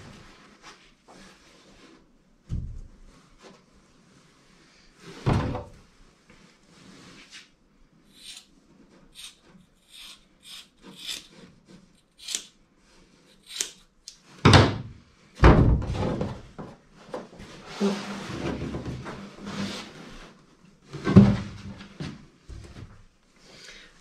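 Glass fibre tape being unrolled and handled in a plywood dinghy hull: a run of short scissor snips through the tape in the middle, then a few dull thumps on the plywood as the roll and cut lengths are set down, the loudest in the second half.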